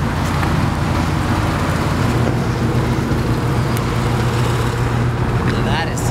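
Sports car engines running steadily at low revs in a slow-moving line of cars.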